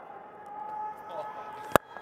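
Cricket bat striking the ball hard: a single sharp crack near the end, far louder than the steady background noise. The shot is hit cleanly through the offside for four.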